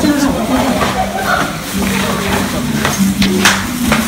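Indistinct chatter of several young voices, with rustling and bumps as the phone is handled and pressed against clothing.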